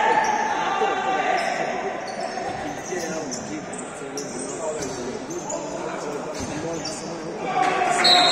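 Futsal game in a reverberant gym: players' shoes squeaking in short bursts on the court floor, mixed with players shouting, with a long shout near the start and another just before the end.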